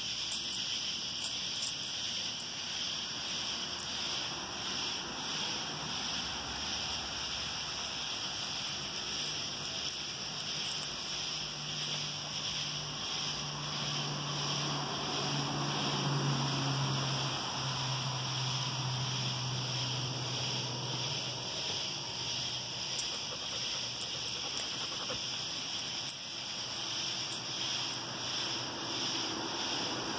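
A steady chorus of night insects trilling in an even pulse. A low drone rises in the middle and fades away again.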